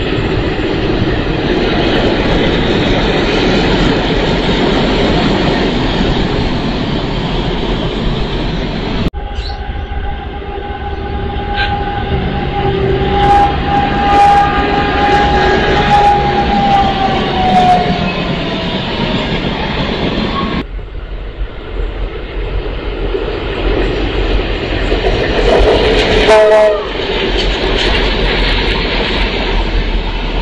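Diesel locomotives running past on the track, heavy engine and wheel noise in three separate passes that cut in abruptly. In the middle pass a locomotive horn sounds one long blast, its pitch dropping near the end as it goes by.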